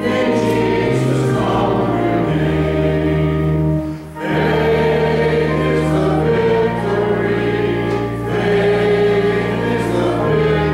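A hymn sung by a group of voices, with steady held chords underneath. The sound dips briefly about four seconds in, between phrases.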